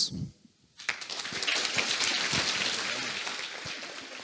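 Audience applause in a large hall. It breaks out about a second in, builds quickly and then slowly dies away.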